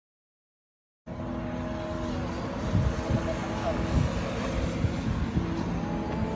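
A steady low mechanical hum with rumble, like a running engine, cutting in suddenly about a second in after silence.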